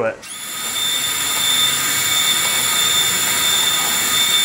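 Wire drive motor of a Yes Welder Flux 135 flux-core welder running at full wire feed speed, pushing 0.030 flux-core wire through the straightened gun lead. It is a steady whine that starts just after the beginning and grows slightly louder over the first second.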